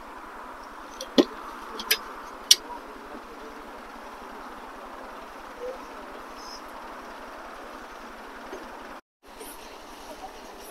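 Chrome headlight bezels clinking three times against metal parts over a steady outdoor background hum. The sound drops out briefly near the end.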